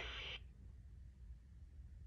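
The talking toy's electronic voice trails off in the first half-second, followed by near silence: room tone with a faint low hum.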